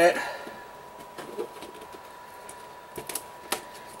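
A few faint clicks and handling noises from a cardboard toy box being worked open by hand, with sharper clicks about three seconds in, over a faint steady high tone.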